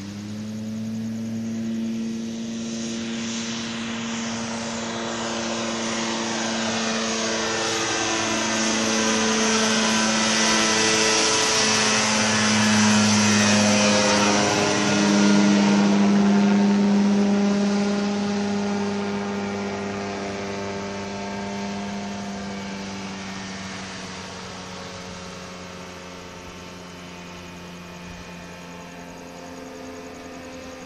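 Weight-shift microlight trike's propeller engine flying overhead: it grows louder as it approaches, passes over about halfway through with a drop in pitch, then fades as it flies away.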